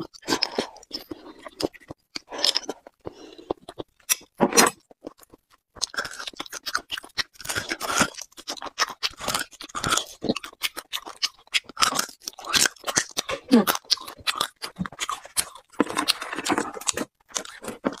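Close-miked eating of braised beef bone marrow: sucking the marrow out of the bone and chewing it, with irregular wet mouth clicks and smacks throughout and a couple of longer sucking slurps, one about four seconds in and one near the end.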